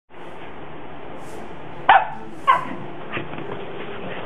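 Small dog barking in play: two short, loud barks about half a second apart, then a fainter third one.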